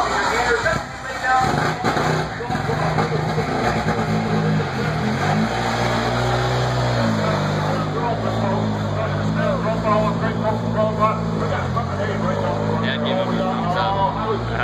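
Dodge Dart rallycross car's engine running at low revs as the car pulls slowly out of the pits. Its note dips and comes back up several times. Crowd chatter carries over it.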